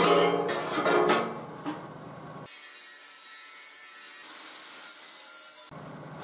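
Steady high hiss of steel being cut, as the wheel arches are cut out of the steel gas-bottle body. It starts about two and a half seconds in and stops abruptly near the end, after some handling noise.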